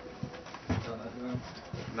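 A person's low, quiet murmuring: a few short hums with no clear words.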